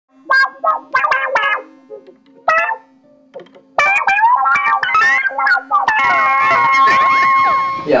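Electric guitar played through effects, loose and unaccompanied: a few short picked notes, then notes bending up and down in pitch from about four seconds in, ending in a sustained note.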